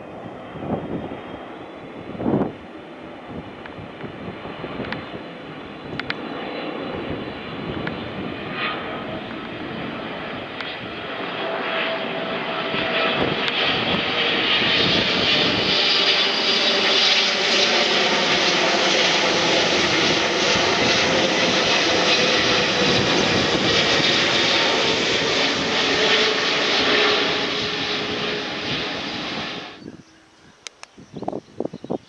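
Boeing 777-300ER's GE90 jet engines passing low overhead on approach. The jet roar builds over the first half and is loudest for about a dozen seconds, with steady whining tones over it, then cuts off suddenly at the end.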